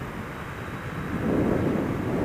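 Suzuki SFV650 Gladius V-twin running at road speed, mixed with wind buffeting on a helmet or bike-mounted microphone.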